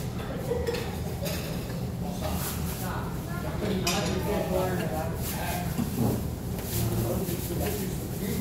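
Metal barbecue tongs clicking and utensils clinking against dishes at a tabletop charcoal grill, over a steady low hum.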